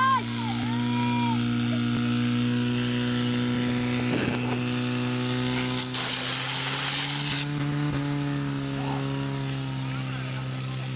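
Portable fire pump engine running steadily at high revs while the hoses deliver water, its pitch stepping up slightly about eight seconds in. A shout is heard at the very start.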